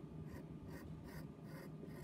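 Pencil drawing on paper: faint, short scratchy strokes, about two to three a second, as the lead sketches a line.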